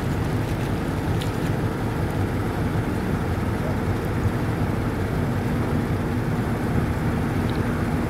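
A motorboat engine running steadily, mixed with wind noise on the microphone.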